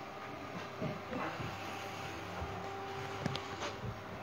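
Steady low hiss of room tone with a faint steady hum and a couple of soft knocks near the end.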